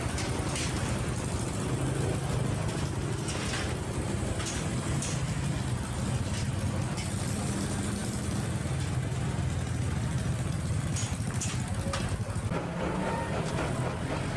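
Small river ferry's engine running steadily at idle while moored at the landing, mixed with motorbike engines as riders drive off the ramp, with occasional clicks and knocks.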